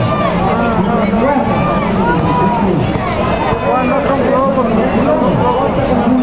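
Crowd babble at an outdoor court: many children's and adults' voices talking and calling out at once, none standing out, at a steady loud level.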